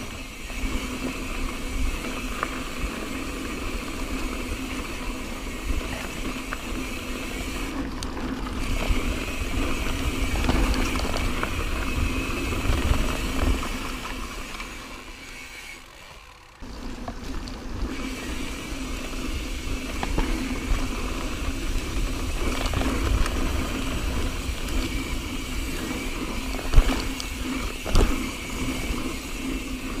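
Mountain bike riding on dirt singletrack: knobby tyres roll over the trail with a steady rumble, and the bike rattles over the bumps. The sound fades about halfway through and cuts back in suddenly a couple of seconds later. There are two sharp knocks near the end.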